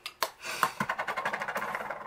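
A fast, even run of small clicks, about fifteen a second and lasting over a second, from a twist-up concealer pen being turned to push product out.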